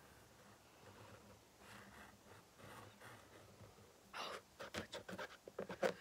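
Quiet breathing and faint strokes of a marker colouring a canvas shoe, with a louder breath about four seconds in and a few soft clicks near the end.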